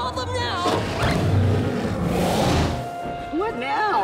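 Animated cartoon soundtrack: background music, with short wordless vocal sounds near the start and end and a low rumbling whoosh that swells and fades in the middle.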